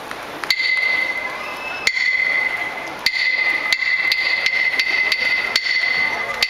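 Wooden clappers (hyoshigi) struck in a series of sharp, ringing clacks. The strikes come over a second apart at first and then faster and faster toward the end, the usual lead-in before a sumo jinku is sung.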